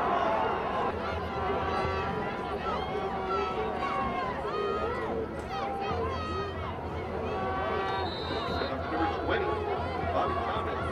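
Football crowd and sideline: many voices shouting and talking at once, no one speaker clear, over a low steady hum. A brief high steady tone sounds near the end.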